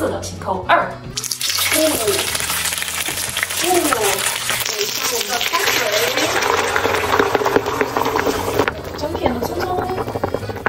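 Whole fish sizzling in hot oil in a wok: a dense, steady sizzle that starts abruptly about a second in. Boiling water is poured in partway through and the sizzling carries on, stopping shortly before the end.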